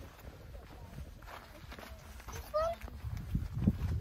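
Footsteps of people walking on sandstone slickrock, the steps heavier in the last second. A short rising vocal call, like a child's, comes about two and a half seconds in.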